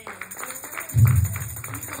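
Church band music playing in the background, with light, quick drum or cymbal taps and a short low burst about a second in.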